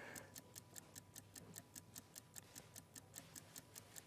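Faint, fast, even ticking of a countdown-clock sound effect, about four or five ticks a second.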